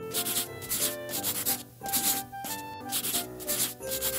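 Scribbling strokes like a marker or crayon rubbing on paper, repeating about two to three times a second, over instrumental music with held notes.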